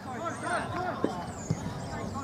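A football kicked twice on a grass pitch, two short knocks about half a second apart, over distant shouting from players.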